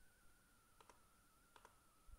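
Near silence: room tone with a faint steady high whine and two faint computer mouse clicks, about a second in and near the end.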